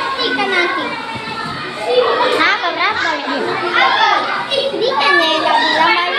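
Several children talking and calling over one another in lively, overlapping chatter.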